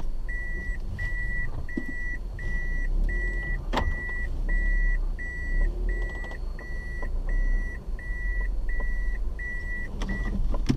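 A car's in-cabin warning beeper sounding in a steady series, about three beeps every two seconds, over the low rumble of the car rolling on a rough dirt road, with a sharp knock about four seconds in.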